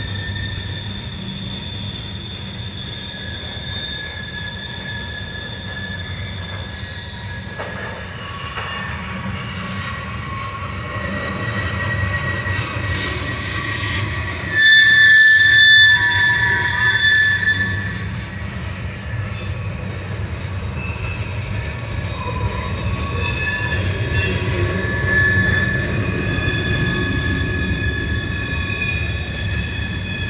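Freight train's covered hopper cars rolling past, with a steady low rumble and wheels squealing in long, high held tones that come and go; the squeal is loudest for a couple of seconds about halfway through.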